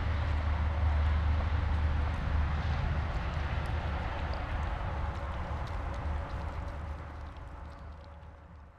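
A low, steady engine-like rumble that fades away gradually, as of a vehicle moving off. Faint small wet clicks from a dog licking and chewing raw meat on a mule deer head.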